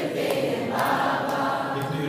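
A group of voices singing together, a choir-like sung chant.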